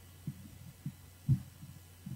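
Faint steady low hum with a few soft low thumps, the loudest a little past halfway.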